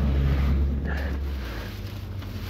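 A low rumble of wind and handling on the microphone that drops away about a second and a half in, over faint rustling as a flat-screen monitor is set down on snow and hands rummage in plastic rubbish bags.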